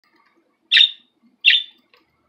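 A budgerigar gives two short, loud chirps about three-quarters of a second apart.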